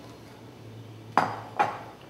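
A glass mixing bowl knocked twice against hard kitchen surfaces, about half a second apart, as it is emptied and put down: two sharp clinks with a short ring.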